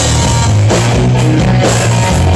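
Live hard rock band playing loud: distorted electric guitars and bass over a drum kit, with a cymbal or snare stroke about every half second.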